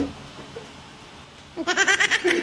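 A short knock at the start, a quieter stretch, then a man's high-pitched, quavering laughter starting near the end.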